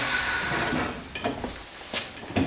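A few light knocks and clicks of hand tools being handled, spread out and faint, over a steady hiss that dies away in the first second or so.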